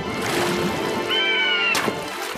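A cartoon bird's cry, one slightly falling call about half a second long a little past the middle, over background music. A short splash of water follows near the end.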